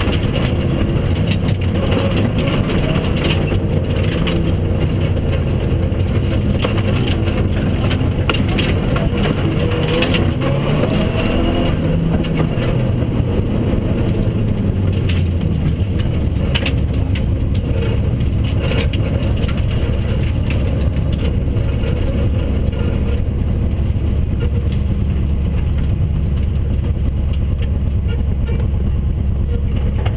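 Rally car's engine heard from inside the cabin, pulling with the revs rising and falling while gravel crackles and clatters under the car. About halfway through the engine settles into a steady low drone as the car slows.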